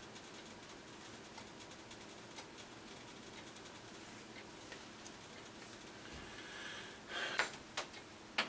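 Quiet room tone with a few faint ticks, then about seven seconds in a couple of short rustling handling noises as a hand takes hold of the steam iron on the ironing board.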